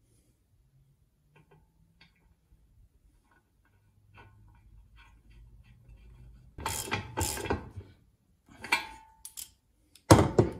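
Hand ratchet clicking in two short runs as the Teflon-taped oil filter fitting is snugged into the aluminium oil pan, after a few seconds of faint ticks and handling noise while the fitting is started.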